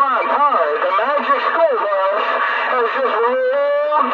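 Voices coming over a Galaxy DX 959 CB radio tuned to channel 28 (27.285 MHz), heard through the radio's speaker with a thin, narrow sound.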